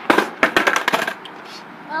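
Skateboard flipping up and clattering down onto concrete, deck and wheels knocking on the ground several times in quick succession during the first second.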